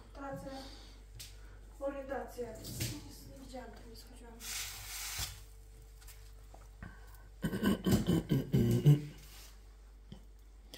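Quiet conversational voices in a kitchen, loudest near the end, with a short hiss about halfway through and a faint steady tone under the middle.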